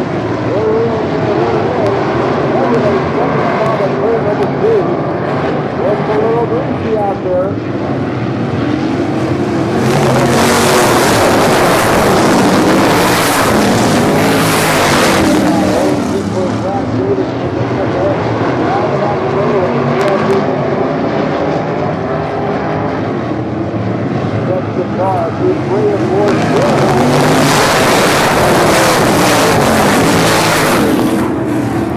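Several sprint car engines running on a dirt oval, their pitch rising and falling as the cars lap. The engines get louder twice, for several seconds from about ten seconds in and again near the end, as the pack comes closer.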